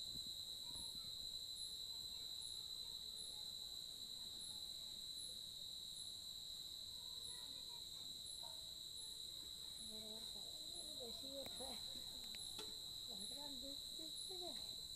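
Night insect chorus: crickets trilling steadily on one high note, with a second, higher chirp repeating about every two-thirds of a second.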